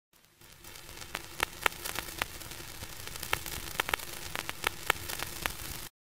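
Static hiss fading in, with irregular sharp crackles and pops through it, cutting off abruptly just before the end.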